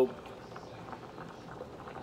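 A pot of mini potatoes boiling on the stove: a faint, steady bubbling with small irregular pops.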